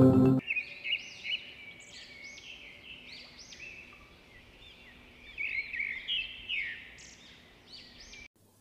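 Intro music cuts off about half a second in, then birds chirping in quick, repeated high notes that rise and fall, louder about five to seven seconds in.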